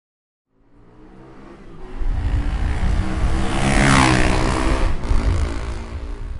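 Motorcycle engine running on the move with wind rush, fading in about half a second in and growing louder over the next few seconds.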